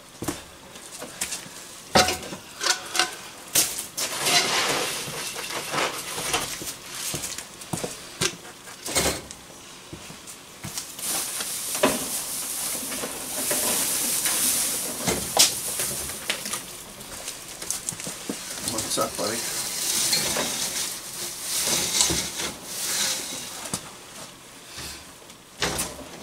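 Rustling and scattered knocks and clinks as someone moves about on straw and handles things off camera, with a hissing rustle that swells around the middle.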